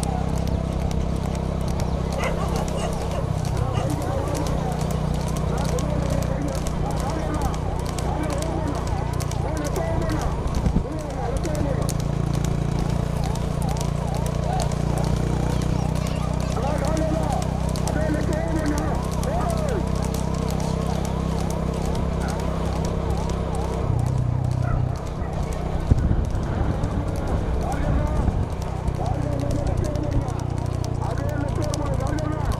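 Racing horses trotting on asphalt, their hooves clip-clopping steadily as they pull light two-wheeled racing carts, over a constant low engine hum from the vehicle running ahead of them. Voices shout throughout.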